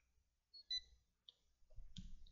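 A short, high electronic beep from a colour spectrophotometer as it takes a measurement of a printed sample, followed by a couple of faint clicks.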